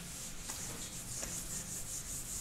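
Whiteboard eraser wiping across a whiteboard: a continuous dry rubbing hiss.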